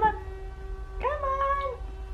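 A single drawn-out high-pitched vocal call about a second in, lasting under a second: it rises, holds steady, then drops away.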